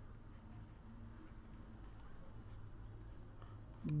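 Faint scratching and light tapping of a stylus writing on a tablet, over a steady low hum.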